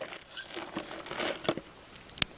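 Quiet sipping from a hand-held drinking cup, with a few small clicks from the cup being handled, two sharper ones about one and a half seconds in.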